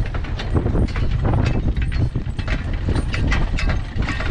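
A team of draft horses walking in harness, pulling a fore cart over snow: a steady rattling of irregular clanks and clicks from the cart and harness over a continuous low rumble.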